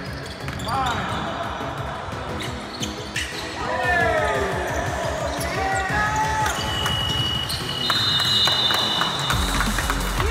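Basketball game on a hardwood gym floor: the ball bouncing repeatedly, short squeaks and shouts, and a steady high-pitched tone over the last few seconds.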